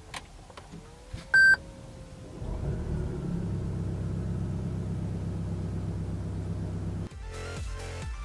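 A click, then a single short electronic chime about a second and a half in as a Toyota Camry Hybrid's power switch is pressed and the car comes to Ready. A steady low hum follows and stops abruptly near the end.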